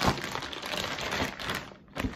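Packaging crinkling and rustling as it is handled, with many small crackles, dying away near the end.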